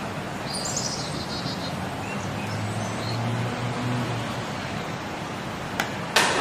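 Birds chirping a few short times, the clearest about half a second to a second and a half in, over a steady background hiss.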